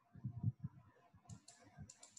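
Faint, sharp clicks of a computer mouse and keyboard: two clicks, then a quick run of three or four, in the second half. Low dull bumps come earlier, the loudest just before half a second in.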